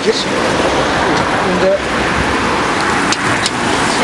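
Uykuluk (sweetbreads) sizzling on a charcoal grill: a steady, even hiss.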